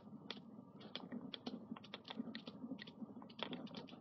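Faint, irregular clicks and taps of a stylus on a tablet screen as handwriting is written.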